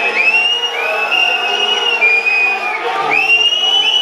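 Football spectators whistling at the match officials as they leave the pitch, a sign of derision: a string of long, shrill, overlapping whistles, each sliding up at the start and dropping away at the end, over crowd voices.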